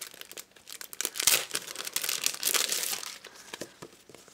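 Plastic sleeve and paper sticker sheets crinkling in irregular bursts as they are handled and slid apart, busiest in the middle.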